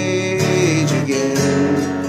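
Steel-string acoustic guitar, tuned a step and a half down to C sharp, strumming chords, with fresh strokes about half a second apart. A man's voice holds a sung note over the first second.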